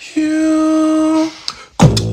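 Vocal beatboxing by two performers: one sung note held steady for about a second, a short click, then a deep falling bass sweep as a fast drum-and-bass beat kicks in near the end.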